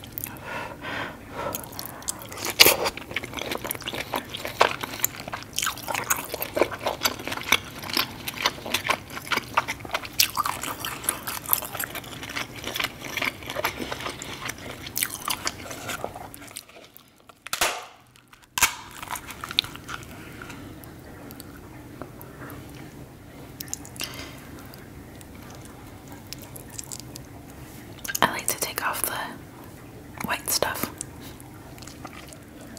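Close-miked eating of sauce-coated king crab and lobster: wet chewing, biting and smacking mouth sounds in quick, clicky succession. About halfway through the sound briefly drops out, then goes quieter with sparser sounds, and near the end there is another burst of handling and chewing as meat is pulled from the crab leg.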